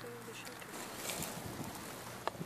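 Dry grass and weeds rustling and crackling in short bursts, loudest about a second in, over wind on the microphone.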